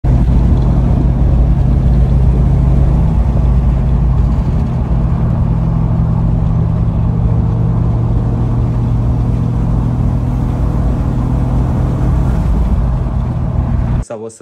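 Mk3 Toyota Supra's turbocharged JZ straight-six droning steadily, heard from inside the cabin while cruising at a near-constant engine speed.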